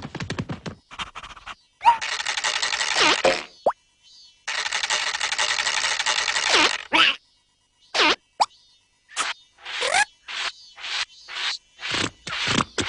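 Cartoon sound effects of a drinking straw being drawn on hard: two long rushing draws of a couple of seconds each, each ending in a sliding pitch, set between quick runs of short pops, some of them gliding in pitch.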